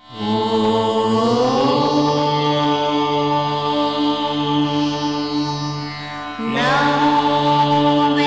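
Devotional channel ident music: a chanted mantra held on long notes over a drone, rising in pitch over the first two seconds. A second held phrase starts about six and a half seconds in.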